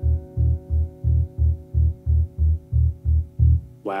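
Closing bars of a jazz-funk tune: one low bass note repeated in an uneven pulsing rhythm, about three pulses a second, under a faint held keyboard chord that fades away. Right at the end a man's voice says "wow".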